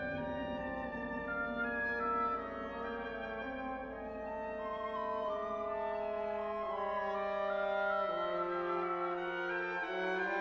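Symphony orchestra playing slow, sustained chords, the held notes shifting one after another, over a low bass that drops away near the end.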